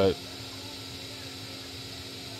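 Steady low hum of a Creality Ender 3 V3 SE 3D printer with its fans running while the print head sits still.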